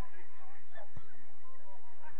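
Short, honk-like shouts from players on a grass football pitch, with a single sharp thud about a second in.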